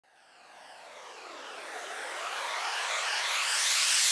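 A synthesized noise riser swelling steadily from silence, with a sweeping, phasing shimmer, building up to a hardstyle track.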